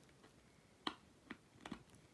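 Near silence with a few faint, short clicks, the loudest a little under a second in.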